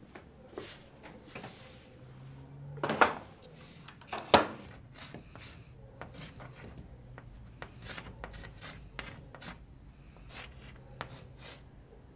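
Two sharp knocks about three and four seconds in, then chalk on a blackboard: short taps and scrapes as lines are drawn.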